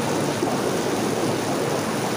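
Heavy rain falling with floodwater rushing through the street: a steady, even wash of water noise.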